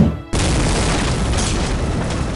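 Explosion sound effect: a low boom right at the start, then after a brief dip a sudden, sustained blast of rumbling noise that carries on steadily.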